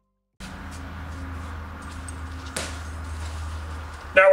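Steady low electrical or fan hum with a faint hiss, starting suddenly about half a second in, and a single sharp click about two and a half seconds in.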